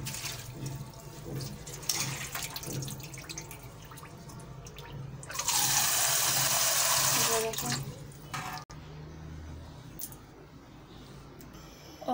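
Agar-agar (china grass) strands being rinsed by hand in a steel bowl of water in a steel sink, with small splashes and sloshing; a little past the middle the tap runs into the bowl for about two and a half seconds with a loud, steady rush, then stops.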